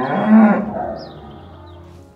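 A single long moo from a bovine animal, loudest about half a second in and fading away over the following second.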